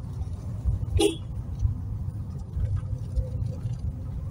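Car driving slowly on a paved road, heard from inside the cabin: a steady low rumble of engine and tyres. A brief sharp sound stands out about a second in.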